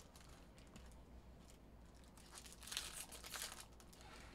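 Faint crinkling of foil trading-card pack wrappers being handled and opened, loudest about three seconds in.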